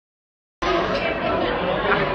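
Several people talking and chattering at once in a busy room. The sound cuts in suddenly out of dead silence about half a second in.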